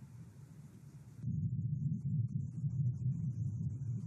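Low rumbling noise coming through a video call's open microphone, starting suddenly about a second in as a faint hiss cuts off.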